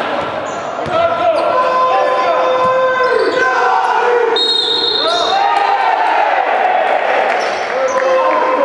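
A basketball being dribbled on a hardwood court, with sneakers squeaking on the floor as players cut and move.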